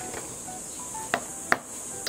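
A carrot being grated on a flat metal grater against a wooden board, with two sharp knocks about a second and a half second later, under faint background music.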